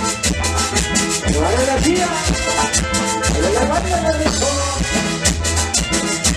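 Live chilena dance music from a small band: an electronic keyboard and a bass line over a steady percussion beat, with two phrases of gliding melody notes.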